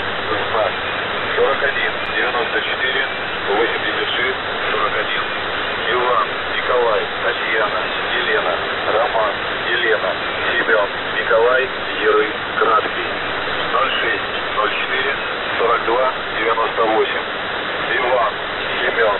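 Shortwave radio reception through a narrow-band receiver: a steady hiss of static with indistinct, garbled voices coming through it.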